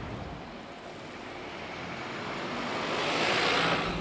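A bus passing close by: a rushing noise that swells steadily and peaks near the end.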